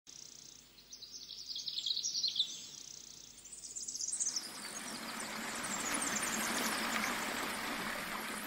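Sound effects for an animated logo reveal: quick, high, sparkly chirping sounds for the first four seconds, then a rushing whoosh that swells and holds.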